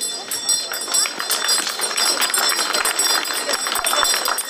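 Small handbell rung continuously, a steady high jingling ringing over crowd noise: the ceremonial first bell of the school year.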